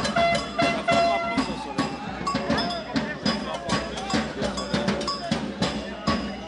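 Street percussion playing a quick steady beat, led by ringing cowbell strikes over drums, with crowd voices mixed in.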